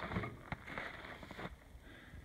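Faint background noise with a sharp click about half a second in and a few small ticks later.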